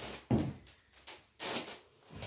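Chainmail rustling and clinking as the wearer moves his mail mittens up to his mail coif, with a sharp knock about a third of a second in and a softer jingle near the end.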